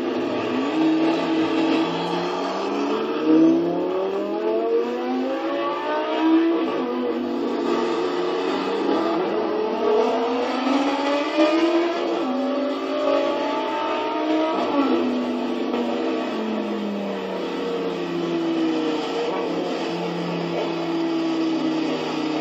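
High-performance car engine accelerating hard: its pitch climbs and drops back through several gear changes, then falls as the car slows and settles to a steady run near the end.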